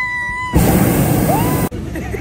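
A hot air balloon's propane burner fires in one loud rushing blast of just over a second, starting about half a second in and cutting off suddenly. It is the long burn that heats the air inside the envelope for takeoff, and it is quite noisy. Just before it, a person gives a held, high cheer.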